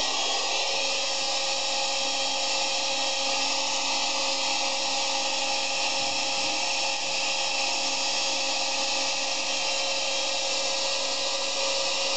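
Electric heat gun running steadily: a constant rush of blown air with a steady motor hum, played over adhesive shelf paper to soften its glue.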